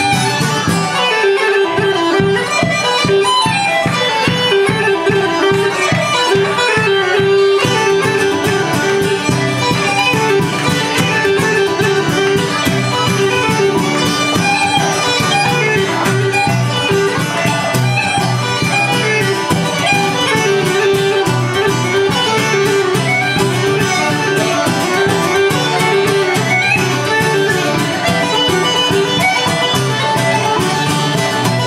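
Uilleann pipes and a strummed acoustic guitar playing an instrumental Irish tune. The chanter carries the melody over steady held drone tones, while the guitar strums a dense, even rhythm. The guitar's low end drops out briefly about a second in.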